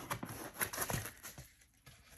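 Rustling and crinkling of a thin polyethylene foam packing sheet being lifted out of a cardboard box, a run of small irregular crackles that dies away about a second and a half in.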